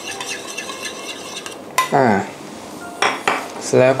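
A metal spoon clinking and scraping rapidly against a dish for about the first two seconds as salad dressing is spooned out. A short spoken 'ah' follows.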